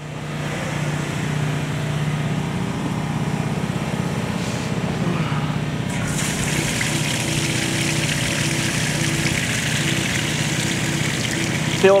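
A water transfer pump running steadily, pushing fresh water through a hose into an agricultural spray drone's tank. About six seconds in, the rushing of water pouring into the tank grows louder.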